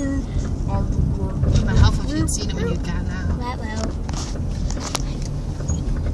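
Road noise inside a moving car's cabin: a steady low rumble under quiet talk during the first few seconds.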